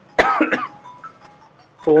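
A man coughs once, sharply, about a quarter second in, with a short voiced tail like clearing his throat. Speech resumes near the end.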